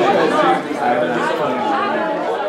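Several people talking at once: overlapping conversation, with no single voice standing out.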